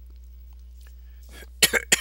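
A person coughs twice in quick succession near the end, two short sharp coughs over a low steady electrical hum.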